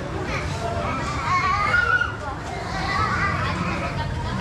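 A young child's high-pitched voice calling out twice, about a second in and again near the end, over background talk of people.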